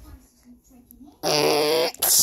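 A person's voice making a wordless, drawn-out vocal noise with a wavering pitch, lasting under a second in the second half, after a quiet stretch.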